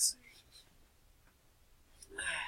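A short breathy, whispered sound from a man right at the start, then near-quiet room tone with a few faint small handling sounds.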